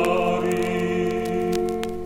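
Choral singing played from a vinyl record: the choir holds a sustained chord that fades away near the end, with the record's surface clicks audible.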